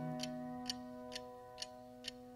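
Quiet gap in a song: a held chord fading away under a steady ticking, about two ticks a second.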